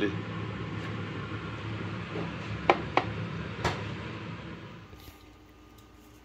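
A glass jar being handled, giving three sharp clicks close together, over a steady low kitchen hum and hiss that drops away about five seconds in.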